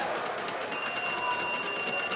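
An electric bell ringing with a rapid, rattling strike in one long burst that starts about a third of the way in, over a steady noisy background.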